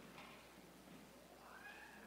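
Near silence: the room tone of a quiet sanctuary, with faint rustling and a faint rising squeak in the last second.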